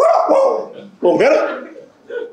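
A man imitating street dogs barking with his own voice into a microphone: two short bark-like calls about a second apart.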